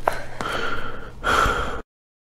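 A cartoon character's breathy gasping vocal effect in two stretches, the second louder, cut off abruptly near the end into dead silence.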